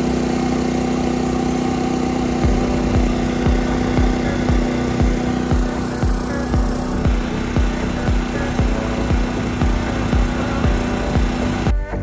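Steady hum of a DJI Mavic 3 Multispectral drone's propellers, cutting off shortly before the end. Background music with a regular low beat comes in underneath about two seconds in.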